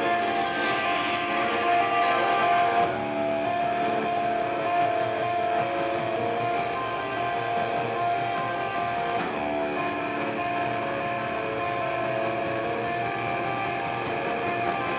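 Live rock band's electric guitars ringing out sustained chords, changing chord about three seconds in and again around nine seconds in.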